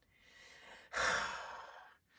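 A man's long sigh: a breathy exhale that starts about a second in and fades away.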